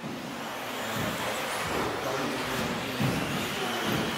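Electric 2WD RC buggies racing on an indoor off-road track: a steady hiss of motors and tyres with a few dull low knocks.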